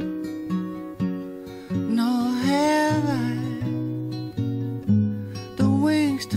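A song playing: acoustic guitar picked and strummed, with a sung phrase about two seconds in.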